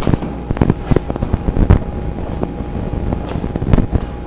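Irregular low thumps and crackles over a constant low rumble: buffeting on a camcorder's microphone.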